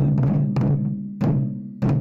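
Several taiko drums struck together in unison with wooden bachi, alternating right and left hands. There is one heavy stroke about every 0.6 s, four in all, each leaving a deep booming ring, with lighter taps between some of them.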